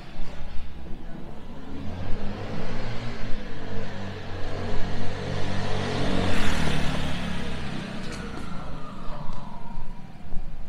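A motor vehicle passing on the street, its engine and tyre noise building to a peak about six seconds in and then fading with a falling pitch.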